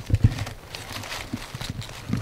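A few soft knocks, then faint rustling and light taps, from hands handling mushrooms in dry leaf litter on the forest floor.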